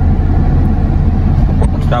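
Steady low rumble of a car's interior with the engine running, heard from inside the cabin.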